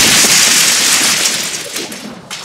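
The rushing noise tail of a loud boom, spread across the mid and high range and fading out near the end.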